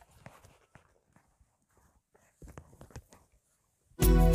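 Near silence, broken by a few faint clicks and a short cluster of soft knocks and rustles about two and a half to three seconds in, from over-ear headphones being put on and settled.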